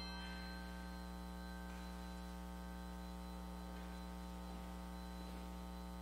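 Steady electrical mains hum, an even buzz with a stack of overtones, carried in the audio feed. The last of a fading musical tone dies away in the first half-second.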